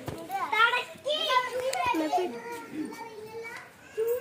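Young children's voices chattering and calling out, high-pitched and overlapping, louder in the first half and fading toward the end.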